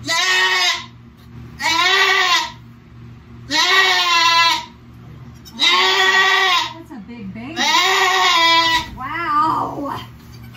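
Nigerian Dwarf goat bleating: five loud, long bleats about two seconds apart, each rising and then falling in pitch, and a weaker, wavering bleat near the end.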